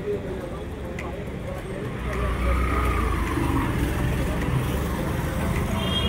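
Street traffic with a vehicle engine rumbling past; the low rumble swells about two seconds in. Background voices are mixed in.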